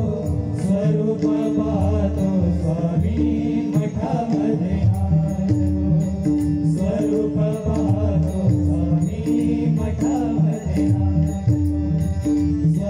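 Devotional bhajan music: a harmonium melody with a repeating held note over pakhawaj and tabla drumming, with chant-like voices.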